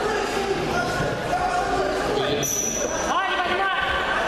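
Several voices talking and calling out, echoing in a large sports hall, over repeated dull thuds, with a brief high tone about halfway through.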